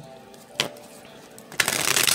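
A deck of tarot cards being shuffled by hand: a single short click about half a second in, then a dense burst of cards riffling against each other near the end.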